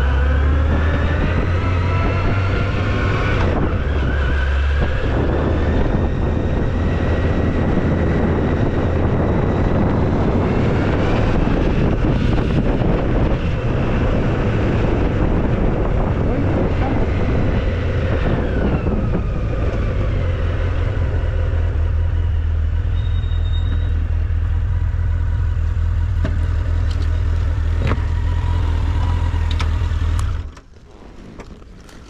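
Honda X4 motorcycle's inline-four engine under way, its pitch rising as it accelerates, with a gear change about three and a half seconds in and another climb after it. Around eighteen seconds in the pitch falls as the bike slows, and the engine runs more quietly from then on.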